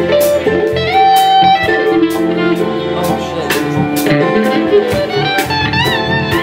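Live band playing: drums keep a steady beat under bass and keyboards while an electric guitar plays a lead line, with bent, wavering notes near the end.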